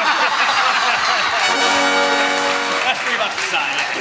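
Panel and audience laughing, with a steady horn-like blast sounding for about a second and a half in the middle.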